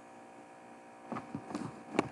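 Steady electrical mains hum on the recording, with a few faint short sounds in the second half and a sharp click at the very end.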